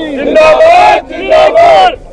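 A crowd of men shouting celebratory slogans, with two long, loud shouts about a second apart.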